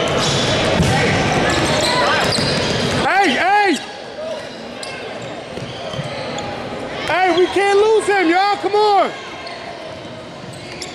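Indoor basketball game on a hardwood court: busy gym noise with the ball bouncing, then, after a sudden drop in background, sneakers squeaking on the floor, twice about three seconds in and in a quick run of short squeaks near the end.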